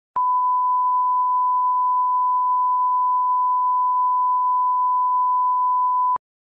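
A steady, unbroken 1 kHz sine-wave test tone of the kind used as a reference line-up tone at the head of a video master. It switches on with a click just after the start and holds one pitch at one level throughout.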